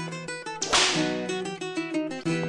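Instrumental hip-hop beat with a repeating plucked-string riff. About two-thirds of a second in, a single sharp noisy swish, like a whip crack or a cymbal hit, cuts across the beat and fades within half a second.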